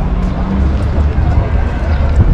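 Street ambience dominated by a heavy, steady low rumble, with faint voices in the background.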